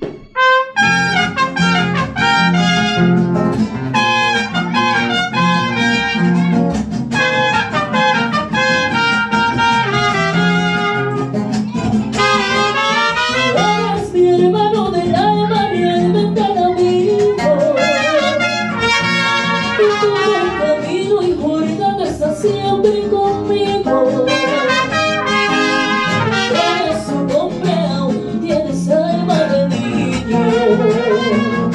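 Mariachi band playing a song, with trumpets carrying the melody over a steady bass and guitar beat. It starts about half a second in.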